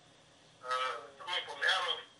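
A person speaking in short phrases, with drawn-out vowels, after a brief pause at the start.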